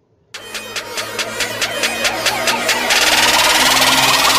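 Electronic music starting suddenly: a pulsing synthesised build-up, about four beats a second, growing louder and thickening into a dense wash of sound near the end.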